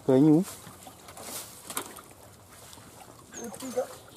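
Men's voices: a short, loud call right at the start and brief calls near the end, with a quiet stretch and a few faint clicks in between.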